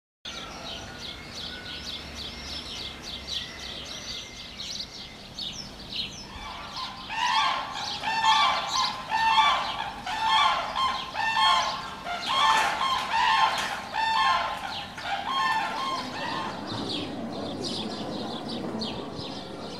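Birds calling: quick high chirping at first, then from about seven seconds in a loud series of repeated pitched calls from a larger bird, about two a second, tailing off near the end.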